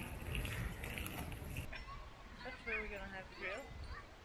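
Outdoor street noise with footsteps on pavement, then a person's voice in the second half, rising and falling in pitch.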